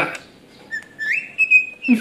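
Cockatiel whistling a tune: a clear note that steps up to a higher pitch about a second in and holds there.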